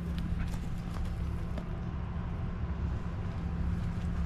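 Footsteps on dry grass and dirt, a few faint irregular crunches, over a low rumble of wind on the microphone and a steady low hum.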